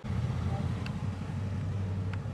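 Several motorcycles running at low speed as they ride past in formation, a steady low engine sound, with a couple of faint ticks.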